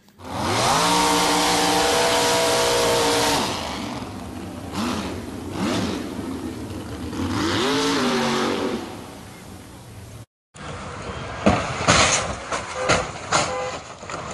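A car engine revs up and holds at high revs for about three seconds, eases off, then rises and falls again around eight seconds in. After a brief break come several sharp knocks and bangs.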